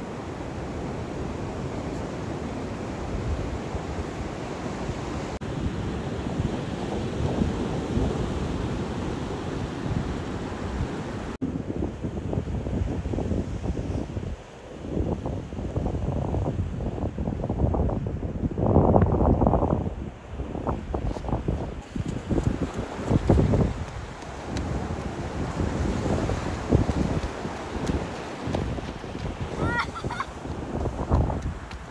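Ocean surf washing up a beach, a steady rushing wash. After a sudden cut about 11 seconds in, wind gusts buffet the microphone in uneven bursts over the sound of the surf.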